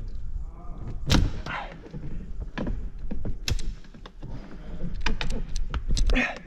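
Plastic trim tool prying at the rear door card of a 2018 Seat Leon Cupra: a series of sharp clicks and knocks of hard plastic as the door panel's retaining clips are forced, the loudest a little over a second in, then a quicker run of clicks near the end. The clips are new and very strong and hard to release.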